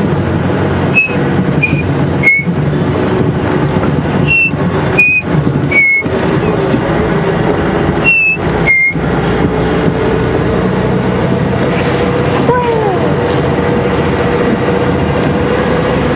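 Chinspot batis whistling its short descending three-note phrase, three phrases in the first nine seconds, over the steady running of an open safari vehicle's engine as it drives. A single falling call is heard about twelve seconds in.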